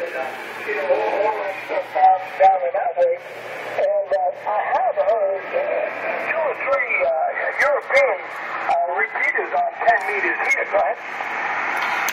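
A man's voice received over the radio on the 10-meter band, playing from the transceiver's speaker: thin, narrow-band single-sideband voice audio with no deep or high tones.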